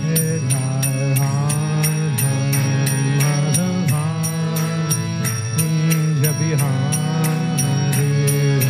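Devotional kirtan: a man's voice singing a Vaishnava chant over held harmonium chords, with small hand cymbals (karatalas) striking a steady beat about three times a second.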